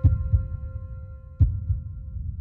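Cinematic logo sting sound design: two deep, heartbeat-like thumps about a second and a half apart over a low rumble, with a few held tones fading away.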